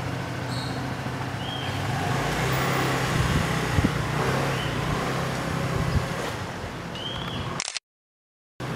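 Steady outdoor background noise with a low engine-like hum that swells slightly in the middle, and a few knocks around the middle. The sound cuts out abruptly shortly before the end.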